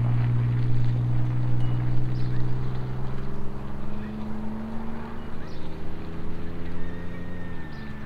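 An SUV's engine running as it drives away, loudest at first and gradually fading; its pitch drops near the end.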